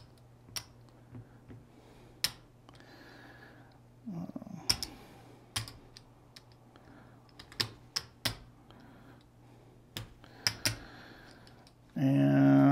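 Casino chips clicking as they are picked up and set down on a craps table, about ten sharp clacks spaced irregularly.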